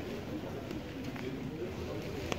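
A bird calling over steady outdoor background noise.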